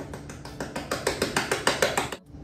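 Cinnamon being shaken hard out of its container over a mixing bowl: a fast run of sharp taps, about seven a second, getting louder toward the end.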